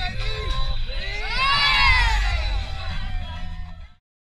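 Group of children shouting and cheering, with one long rising-then-falling whoop about a second in, over background music with a deep bass; the sound fades out just before the end.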